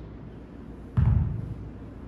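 A hex dumbbell set down on rubber gym flooring: one dull thud about a second in.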